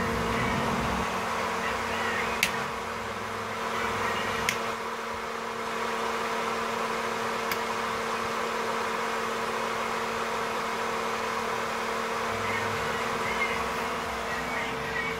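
A small electric motor running with a steady buzzing hum, and three sharp clicks of rocker switches being flipped on an ambulance's 12-volt switch panel, spaced a few seconds apart.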